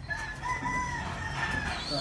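Rooster crowing: one long, high crow held steady for about a second and a half.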